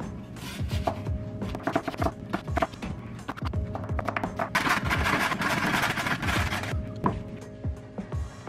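A chef's knife chopping red cabbage and cucumber on a wooden cutting board: a run of quick, irregular knocks against the board, with a denser stretch of cutting in the second half. Background music plays throughout.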